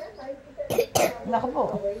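A young boy coughs twice in quick succession, about a second in, followed by a short voiced sound.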